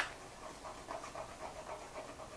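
Faint, quick breaths close to the microphone, coming in a short even run.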